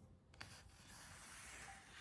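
Faint rustle of a paper book page being turned by hand, with a light tick about half a second in.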